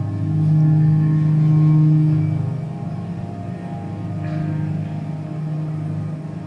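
Electroacoustic drone music: a low, sustained hum of steady tones that swells louder for about two seconds near the start, then eases back and holds.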